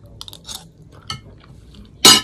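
A few light clicks of a metal fork against a plate while eating.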